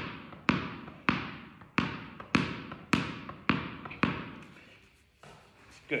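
A tennis ball being tapped down with a tennis racket and bouncing on a wooden hall floor, a sharp bounce about twice a second, each echoing in the hall. The bouncing stops about four seconds in.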